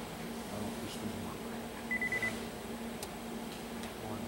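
Digital recorder beeping: a quick run of short, high electronic beeps about halfway through, over a steady low hum. The beeps are a sign of the recorder trouble that is named just after.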